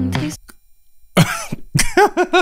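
Soft female pop singing breaks off suddenly about half a second in as the song is paused. After a short silence a man bursts out in loud, breathy laughter.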